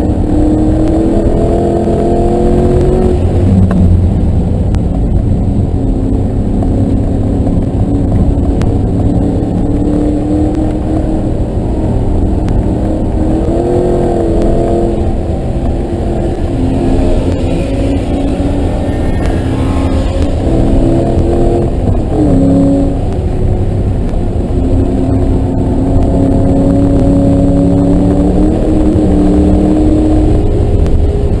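2009 Ford Mustang GT's 4.6-litre V8 engine running hard on a race track, its note rising and falling again and again with the throttle through the corners.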